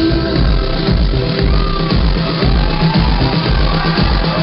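Live band playing electronic dance-pop with a steady, pulsing beat, heard loud from the crowd.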